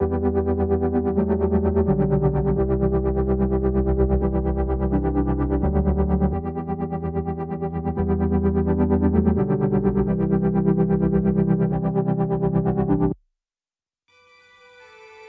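Electronic dance music played back from a DAW project: synth chords pulsing quickly and evenly over a bass line, the chords changing about every two seconds. The playback stops abruptly about a second before the end.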